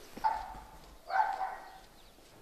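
A dog barking twice, about a second apart, the second bark louder.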